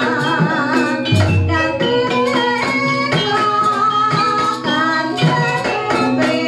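Javanese gamelan music accompanying ebeg dance: struck metallophones ringing in a steady beat with a low drum stroke about a second in, and a singing voice with a wavering vibrato over it at the start and again around the middle.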